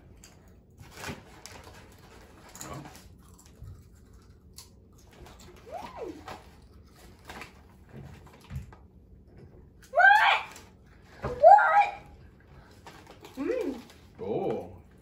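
Faint crunching of wavy potato chips being eaten, and a chip bag being handled. Two short vocal sounds that rise sharply in pitch come about ten and eleven and a half seconds in, and are the loudest thing here.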